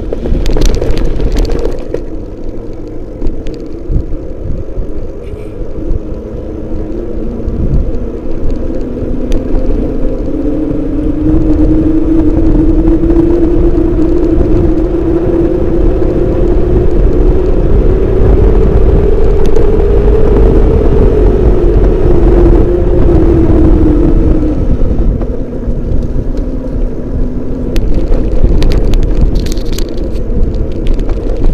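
Wind noise and road rumble on a camera riding a moving vehicle, with a motor whine that climbs steadily in pitch for about ten seconds, then drops back down.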